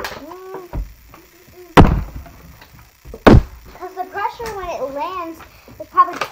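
Partly filled plastic water bottle flipped and landing twice, two loud thuds about a second and a half apart.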